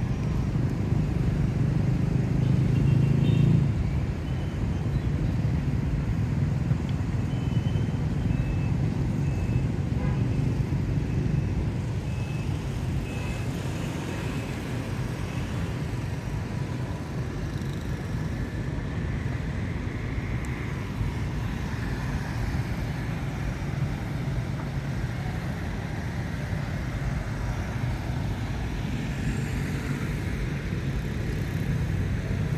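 Steady low outdoor rumble, heaviest in the first four seconds, with a few faint short high chirps over it in the middle.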